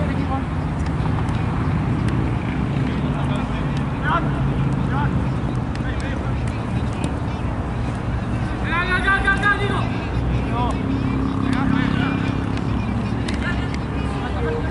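Players shouting across an outdoor football pitch over a steady low rumble. There are short calls around four to five seconds in and again near the end, and one long, loud shout at about nine seconds.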